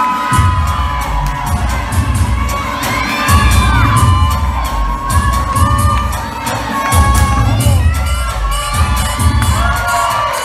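An audience cheering, shouting and whooping loudly over dance music. A heavy bass beat kicks in just after the start and pulses on beneath the shouts.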